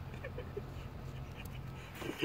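A young kitten making a few short, faint calls while it plays, over a steady low hum.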